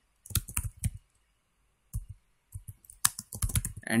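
Computer keyboard typing: a quick run of keystrokes, a pause broken by a single stroke, then a second run of keystrokes.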